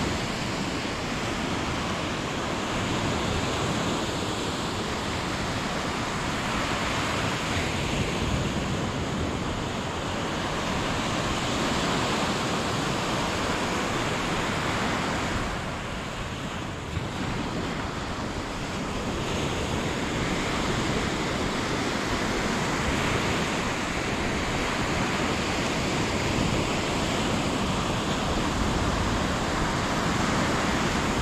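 Ocean surf breaking and washing up a sandy beach, a steady rushing noise with wind rumbling on the microphone. The sound dips a little about halfway through, with one small click.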